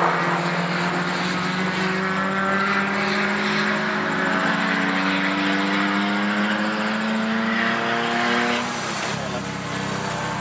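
A car's engine under hard acceleration on a race circuit, its pitch rising slowly and steadily for about eight seconds, then cutting off. Near the end a lower, quieter engine runs close by.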